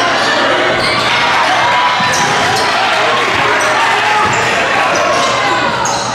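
Live basketball game sound in a gym: a ball bouncing on the hardwood court under a steady din of crowd voices.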